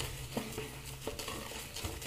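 Ever-Ready 200 shaving brush with a tuxedo knot being swirled through soap lather on a wet face: a faint, soft crackling of bristles and lather, with a couple of small ticks.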